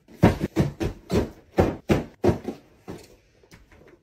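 Cardboard parcel boxes being set down one on top of another: a quick run of about eight dull thuds in under three seconds, then a few faint taps near the end.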